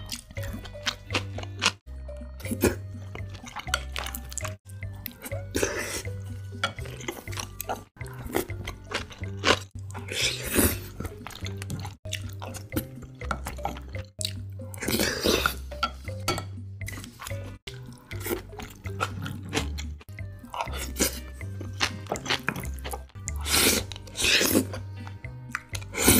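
Close-miked eating sounds: wet chewing and slurping of beef hayashi rice with egg, and bites of kimchi, in a string of short loud bites separated by abrupt cuts. Background music with a steady bass line plays underneath throughout.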